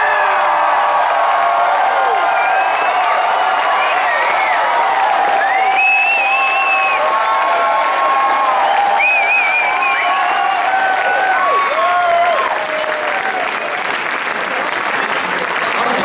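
A large crowd cheering and applauding, with many shouts and whoops rising over the clapping. It eases a little about twelve seconds in.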